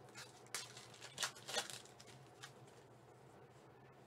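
Trading cards rustling and sliding against each other as they are handled and flipped through, with a few short scrapes about half a second, a second and a second and a half in. A faint steady hum sits underneath.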